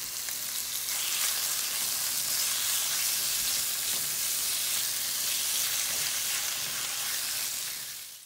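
Diced raw chicken and half-cooked onions sizzling in sesame oil in a nonstick pan, stirred with a silicone spatula. A steady, high frying hiss that grows louder about a second in.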